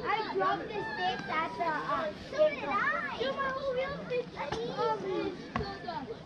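Several children shouting and chattering over one another without a break, the kind of chatter that comes from a youth baseball team.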